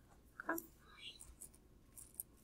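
Mostly quiet room with a soft spoken "okay" about half a second in, then faint scratching of a ballpoint pen writing on paper.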